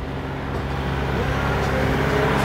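Steady low mechanical hum from a parked semi truck, growing gradually louder.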